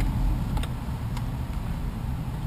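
Low steady rumble inside a car cabin, with a few faint clicks from a finger working the driver-door power window switches of a 2011 Mercedes-Benz E350.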